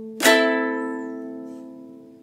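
A ukulele strummed once on an A minor chord, the fourth string fretted at the second fret and the other strings open. The chord rings out and fades slowly.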